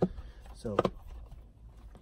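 A man's voice briefly saying "so", with a single short, sharp click right at the start.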